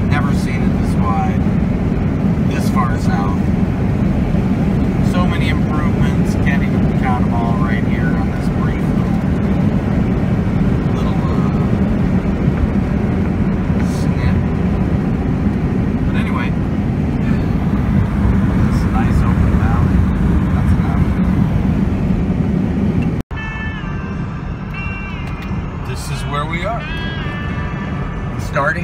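Steady road and engine noise heard inside a car cruising on a paved highway, a dense low rumble of tyres and motor. Near the end an edit cut drops it abruptly to a quieter, thinner cabin rumble.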